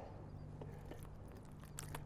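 Faint handling noise as a freshly caught Spanish mackerel is held up by hand: a few soft clicks and scrapes near the end over a steady low hum.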